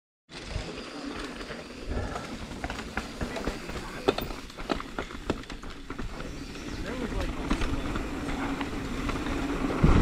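Mountain bike rolling fast down a dirt trail, heard from the rider: steady tyre and ground rumble with sharp rattles and clicks from the bike over bumps, thickest about four to five seconds in. The rumble grows louder toward the end as speed builds.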